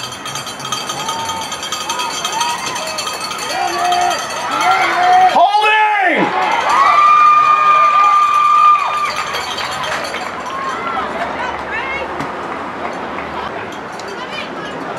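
Spectators at a youth football game shouting and cheering during a play, swelling from about four seconds in to a peak with one long held cry, then settling back to scattered voices.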